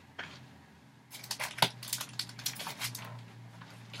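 LP record sleeves scraping and knocking against each other as an album is pulled out of a tightly packed record shelf: a string of short scrapes and taps starting about a second in.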